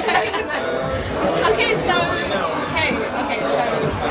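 Women laughing and talking, over background music and the chatter of a crowded room.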